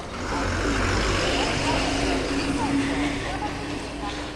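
Diesel engine of a BS-VI KSRTC bus running as it drives past at low speed; the rumble swells about a third of a second in and then holds steady with a faint engine tone.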